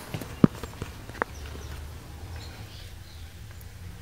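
Movement and handling noise as the camera is carried down to the wheel: a sharp knock about half a second in, a smaller click just after a second, then a low steady rumble.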